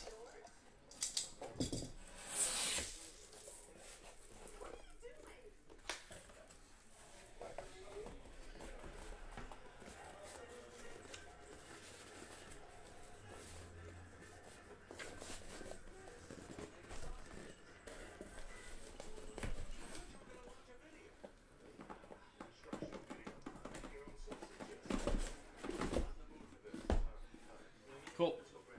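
A cardboard shipping case being opened and unpacked: a brief loud rasp about two and a half seconds in, then quiet rustling and scraping of cardboard, and a few knocks near the end as the boxes are lifted out and set down.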